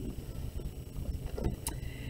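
Faint scratching of a mechanical pencil writing a number on paper, over a steady low background hum.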